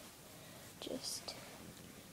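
A brief, soft, whispered bit of speech about a second in, with a hissy 's' sound, over low room noise.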